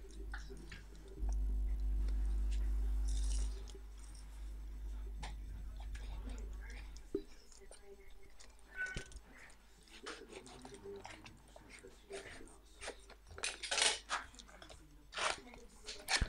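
Cardboard box being worked open by hand, its taped end flap picked at and pulled: scattered small clicks and taps of cardboard and tape, with two short scraping rasps near the end. A deep rumble of handling noise on the microphone runs through the first half.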